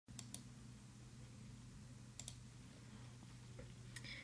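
Near silence with a low steady hum, broken by two pairs of faint computer clicks: one pair near the start and another about two seconds in.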